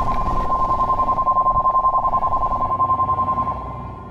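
Electronic signal-tone sound effect marking the end of the transmission: a steady high tone over a rapid, even pulsing, which fades away in the last half second.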